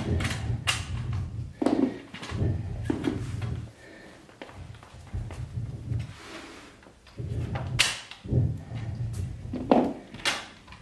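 Weight plates being taken off a barbell and set down on a hard floor: a series of irregular knocks and clunks with handling noise between them.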